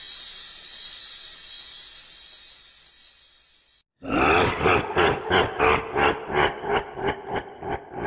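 A bright, shimmering chime-like sound fades away. After a short break, a low throbbing sound pulses about three times a second over a steady hum, the pulses weakening toward the end.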